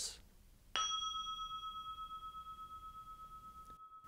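A single struck bell-like chime, a "ding", sounding about a second in and ringing on with a slow, wavering decay.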